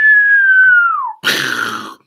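A person whistles a single descending note that slides sharply down at its end. A short breathy rush of noise follows it.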